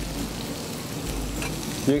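Tomatoes, bell peppers, garlic and herbs frying in olive oil in a frying pan over a gas flame, with a steady, even sizzle.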